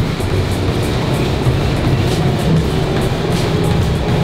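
Motorised treadmill running with a steady low drone and regular footfalls on the belt, about three a second, under background music.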